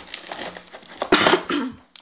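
Wrapping rustles faintly as a card packet is handled, then a person coughs twice, loudly and briefly, about a second in.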